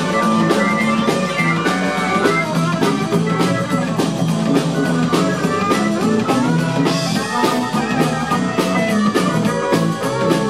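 Live blues band playing a 12-bar blues in E: electric guitars, drum kit and bass keep a steady beat while a harmonica plays into the vocal mic, with no singing.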